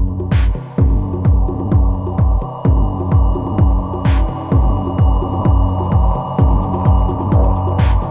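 Electronic dance music from a progressive house DJ mix. A deep kick drum falls in pitch on each beat, about twice a second, over a sustained bass drone. Ticking hi-hats grow busier near the end, and a cymbal crash comes about every four seconds.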